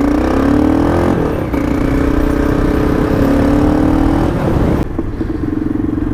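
Motorcycle engine pulling away and accelerating, its pitch rising, dropping back at a gear change about a second in and again past four seconds, then holding steady at cruising speed. Wind rushes on the bike-mounted microphone.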